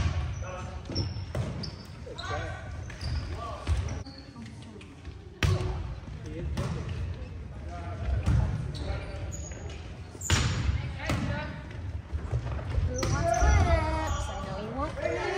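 Volleyball rally: several sharp hits of hands and arms on the ball, one near the start, one about five seconds in and one about ten seconds in, with short high squeaks of sneakers on the hardwood court between them. Players call out and talk throughout.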